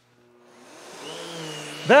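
Miele canister vacuum cleaner switched on, its motor spinning up over about a second and a half into a steady hum with a high whine.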